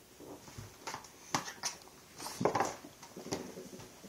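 Baby slapping hands on a plastic high-chair tray: a handful of short, sharp slaps spread across a few seconds, the loudest about two and a half seconds in.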